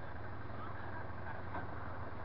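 Coach bus's diesel engine running close by as the bus moves slowly past, a steady low hum.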